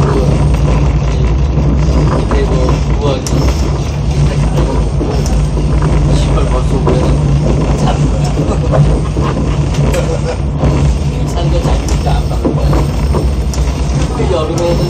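Cabin sound of a Korean commuter diesel railcar (CDC) under way: a steady low drone from its diesel engine and running gear over continuous rolling rumble, with scattered clicks of the wheels over the rails.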